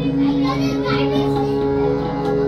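Harmonium holding a steady chord between sung lines of Sikh shabad kirtan, with children's voices chattering in the background about half a second in.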